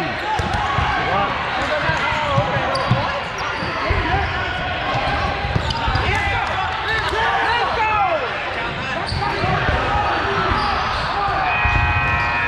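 Dodgeballs being thrown and bouncing on a hardwood gym floor during play, with many short squeaks of sneakers on the court and players shouting, all echoing in a large gym.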